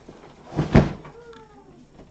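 A loud single thump close by, as a cardboard box is bumped or set down, about three-quarters of a second in. Just after it, a domestic cat meows faintly, its calls falling in pitch.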